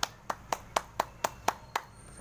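One man clapping his hands, about eight sharp, even claps at roughly four a second.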